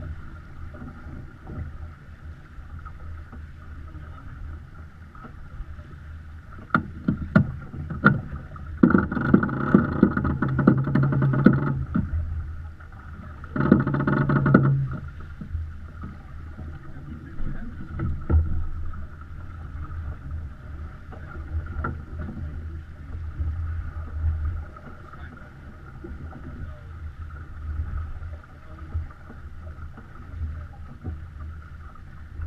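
Water rushing along the hull of a Beneteau First 337 sailing yacht under way, a steady low rush. About nine seconds in a loud buzzing sound lasts nearly three seconds, with a shorter one two seconds later and a few sharp clicks just before.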